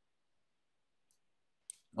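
Near silence on a video-call line, broken by a faint click about halfway through and a sharper click near the end, just before a man starts speaking.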